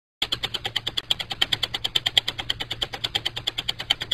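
Ratchet-like mechanical clicking from a gear-turning sound effect, rapid and very even at about nine clicks a second, over a low steady hum.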